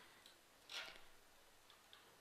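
Near silence: room tone with a few faint ticks and one short, soft hiss just under a second in.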